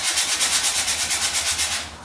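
80-grit sandpaper rubbed by hand back and forth over a paper rocket motor-mount adapter tube, about seven quick, even strokes a second, sanding off stray epoxy.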